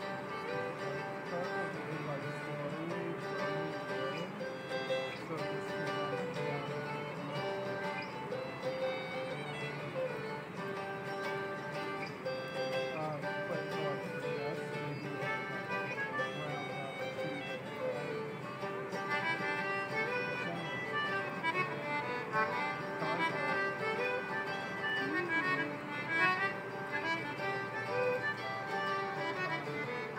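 Live acoustic folk music: a fiddle plays a tune with sliding notes over a second string instrument accompanying it.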